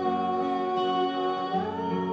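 A woman singing a Christmas carol to two acoustic guitars; she holds one long note, then rises to a higher one near the end.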